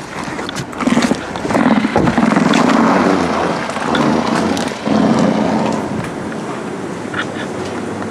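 Someone getting out of a car and walking outdoors, with wind buffeting the microphone over street noise. A thump about two seconds in, typical of the car door shutting, and scattered small knocks and footsteps.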